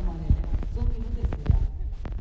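A woman singing held notes into a microphone over the heavy bass thumps of amplified music.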